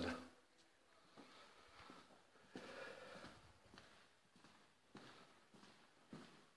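Near silence: faint room tone with a few soft knocks.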